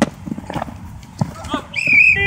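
Football players running on grass, with scattered dull thumps of footfalls after a sharp slap at the start. A high-pitched shout rings out near the end.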